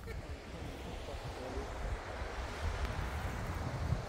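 Wind buffeting the microphone in the open: a steady rumbling hiss with gusts.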